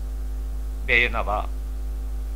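Steady low mains hum on an old radio recording, with one short recited word from a man's voice about a second in.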